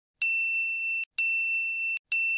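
Two identical high, bell-like ding sound effects about a second apart. Each rings a clear single pitch and is cut off abruptly.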